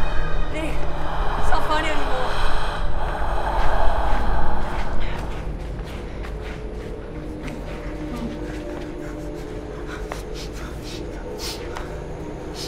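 Heavy, panicked breathing and gasps over a low, droning horror score. The breathing stops about five seconds in, leaving the steady drone.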